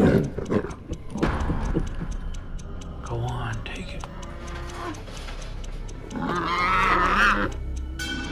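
Horror film soundtrack: tense score with a regular ticking, and a loud, wavering vocal cry about six seconds in that lasts just over a second.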